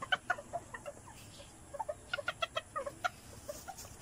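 Serama bantam chickens clucking: short notes scattered throughout, with a quick run of them a little past two seconds in.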